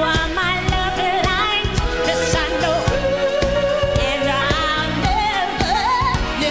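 A female soul singer sings long, wavering vocal runs over a live band, with sustained chords and steady drum hits.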